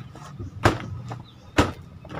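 Two dull thumps about a second apart: a soil-filled fabric grow bag jolted down against the ground to settle and compact its rice-husk and soil potting mix.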